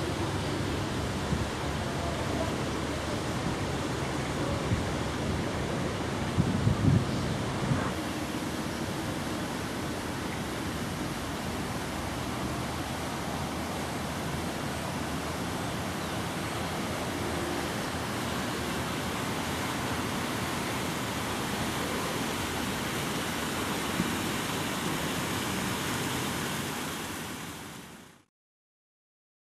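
Steady outdoor noise, a mix of hiss and low rumble, with a few brief knocks from handling the camera, the loudest about seven seconds in. It fades out at the end.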